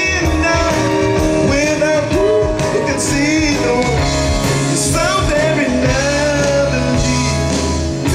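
Live band playing amplified rock music with a lead singer, over a drum kit and bass guitar, with electric guitar, fiddle and banjo in the band.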